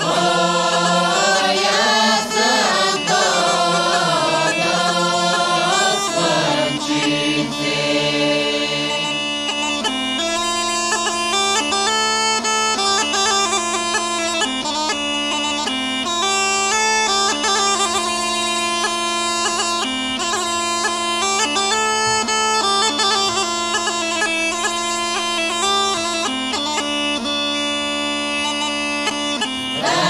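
A mixed group of folk singers sings a Bulgarian village song over a steady bagpipe drone. About nine seconds in the voices stop, and the gaida (Bulgarian bagpipe) plays the quick, ornamented melody alone over its drone. The singing returns right at the end.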